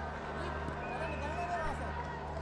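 Cricket ground ambience: a steady low hum with faint distant voices calling from the field.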